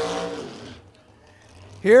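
A race commentator's voice trails off, followed by about a second of quiet low background rumble before he speaks again.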